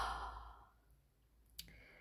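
A person's sigh, a breath out lasting about half a second, fading away. Then near silence, with one faint click near the end.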